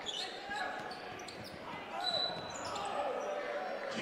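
Quiet basketball arena sound during live play: a ball bouncing on the hardwood court, a short high squeak about two seconds in, and faint distant voices.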